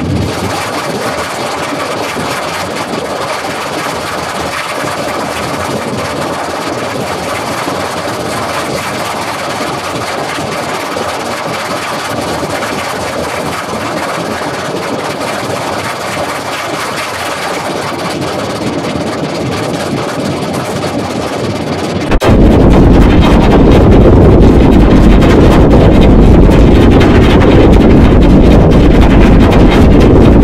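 Heavily distorted, effects-processed logo audio: a steady harsh noise that, about 22 seconds in, jumps abruptly much louder into a dense low rumble.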